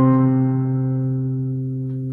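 Digital piano holding a low octave struck just before, ringing on and slowly fading.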